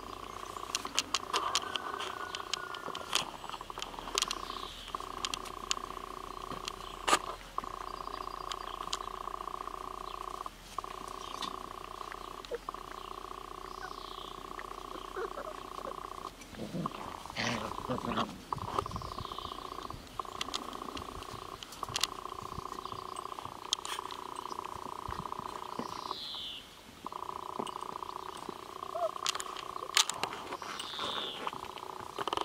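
A steady droning hum of several even tones runs under everything, broken by a few short gaps. Over it come sharp clicks and taps, a few short high falling chirps, and, about halfway through, a short stretch of low growling from saluki puppies at play.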